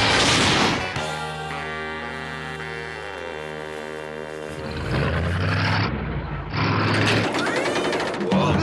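Cartoon soundtrack: a crash sound effect in the first second, then sustained music chords, turning louder and noisier with a low rumble from about halfway through.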